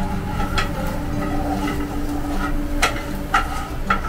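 A wooden spatula knocking sharply against a frying pan a few times while food is stirred, over a steady mechanical kitchen hum.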